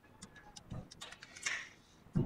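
Ballpoint pen writing on paper: a few light scratching strokes and ticks, with a louder stroke about a second and a half in.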